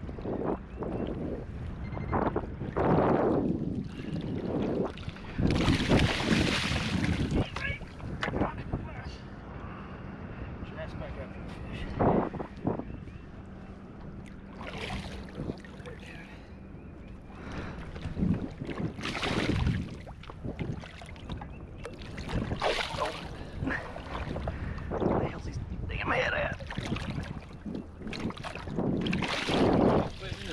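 A snagged paddlefish thrashing at the water's surface beside the boat as it is reeled in, in a series of irregular splashes.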